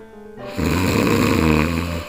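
A snoring sound effect: one long, rasping snore that starts about half a second in and cuts off suddenly near the end, over soft background music.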